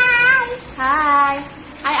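A young child calling 'hi' again and again in a high, sing-song voice, each call drawn out.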